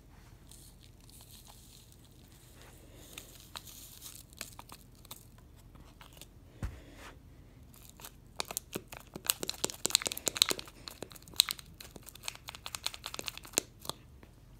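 A small paper packet crinkling as it is tipped and shaken to pour its powder out: only a few faint crackles at first, then a quick, busy run of crinkles for the last five seconds or so.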